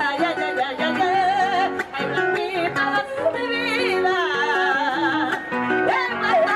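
A woman sings a Panamanian folk melody through a microphone and PA, holding long notes with a wide, wavering vibrato and ornamented turns. An acoustic guitar plays plucked notes underneath her.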